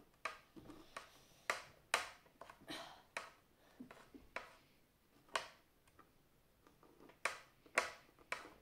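A metal spoon scraping and knocking inside a hollow pumpkin as it loosens the flesh and seeds. It comes as about a dozen irregular sharp clicks and brief scrapes.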